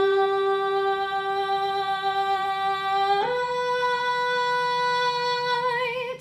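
A woman singing the lead part of a barbershop tag alone, holding the last word "night" on one steady note. A little after three seconds she slides up a fourth to a B and holds it until she stops near the end.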